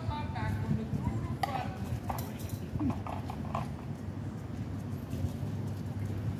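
Indistinct voices of people talking at a distance over a low outdoor street rumble, with a few short knocks.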